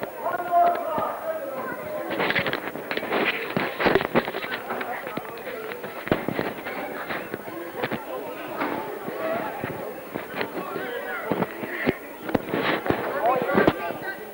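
Indistinct voices with irregular crackling and clicking noise over them.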